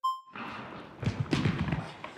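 A short electronic countdown beep at the very start, then a group of people getting up and moving about: thuds, scuffs and indistinct voices.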